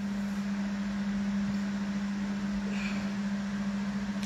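Steady low hum at one unchanging pitch over a faint background hiss.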